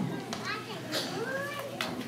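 Several children's voices chattering and murmuring at once, with no clear words standing out.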